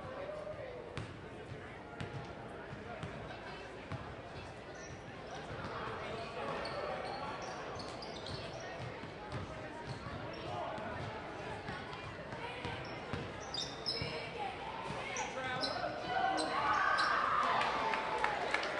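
A basketball bouncing on a hardwood gym floor, with the sharp knocks of dribbling and play, amid players' and spectators' voices in an echoing gymnasium. The sound gets louder in the last couple of seconds.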